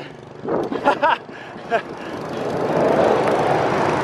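A small motorbike passing close on the road, its noise swelling to a peak about three seconds in. Short snatches of voice come in the first two seconds.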